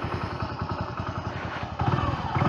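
Small motorcycle engine idling in neutral: a steady, even run of rapid firing pulses.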